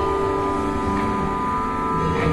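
Live band music through a large arena's PA, recorded from far back: held keyboard-like chords over a low rumble, with the chord shifting near the end.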